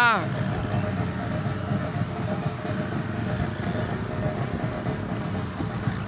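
Music with a drum beat playing across the field, under the voices of people around. A wavering shouted or sung note fades out right at the start.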